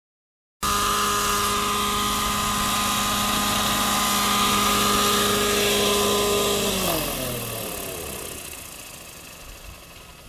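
GAUI NX7 nitro RC helicopter's glow engine and rotor running at a steady high whine, starting abruptly about half a second in. About seven seconds in, the pitch falls and the sound fades as the engine is throttled back and the rotor spins down after landing.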